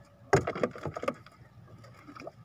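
A short burst of knocks and clatter inside a small wooden outrigger boat, starting about a third of a second in and dying away within a second.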